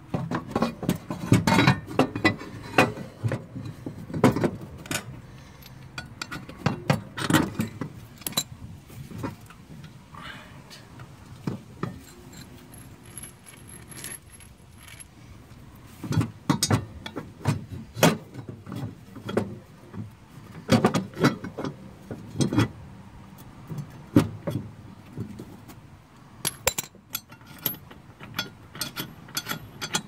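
Irregular metal clinks, knocks and rattles of a ratchet, socket and steel mower blade as the blade is fitted and tightened back onto its spindle under a John Deere Z345R deck. They come in bursts with pauses between.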